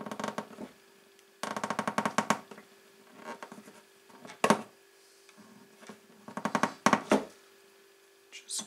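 Bridge pins being pushed and worked into the holes of an acoustic guitar's bridge: several short bursts of quick clicking and scraping, with one sharper click near the middle. The pins fit tightly because glue has got into the holes.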